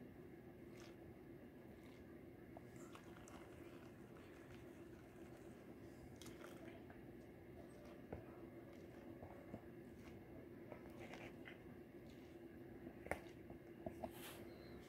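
Faint water lapping and fine gravel and black sand grating in a plastic gold pan as it is tilted and washed in a tub of water, with scattered small ticks, two slightly louder ones around 8 and 13 seconds in, over a steady low hum.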